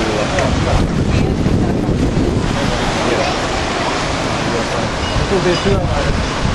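Wind buffeting the microphone over the steady rush of sea surf breaking on rocks, with faint voices in the background.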